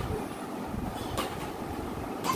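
Steady, fairly quiet room noise with one light tap a little over a second in.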